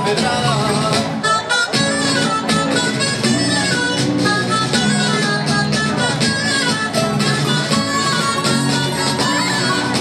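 Live Spanish folk jota played by a plucked-string band of guitars and lutes: a lively instrumental passage with a quick stepping melody over a steady strummed bass, and sharp percussive clicks marking the beat.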